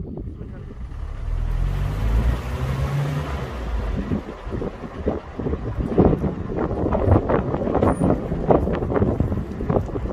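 Car engine pulling away, its low hum rising in pitch over the first few seconds, with road noise. Irregular wind buffeting on the microphone follows as the car gathers speed.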